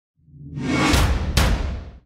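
Title-card intro sting: a whoosh swelling in from silence over a deep low rumble, with two sharp hits about a second in, half a second apart, then fading away.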